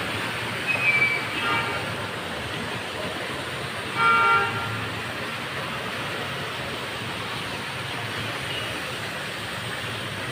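Two vehicle horn honks over a steady wash of street noise: a short one about a second in and a louder one at about four seconds.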